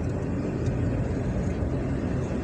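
Steady low rumble of a car's engine and tyres on the road, heard from inside the cabin while it moves slowly in traffic.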